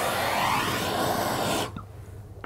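Handheld gas kitchen torch burning with a steady hiss while browning sabayonne spread over berries; the flame is shut off near the end.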